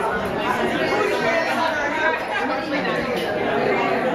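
Many people talking at once in a large room: a steady hubbub of overlapping conversation with no single voice standing out.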